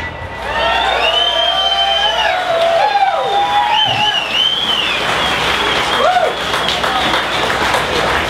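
Audience applauding and cheering as a song ends, with many rising and falling cheers over the clapping that thin out after about five seconds.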